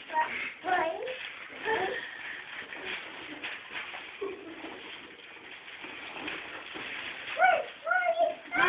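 A toddler's short, high-pitched wordless vocalisations, a few brief sounds spaced out over several seconds.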